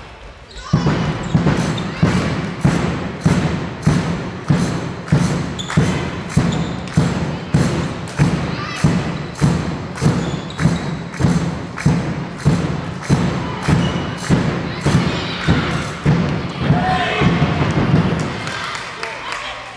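Steady rhythmic thumping, about three beats every two seconds and ringing in the large hall, typical of a supporters' drum at a handball match, with voices over it. The beat starts just under a second in.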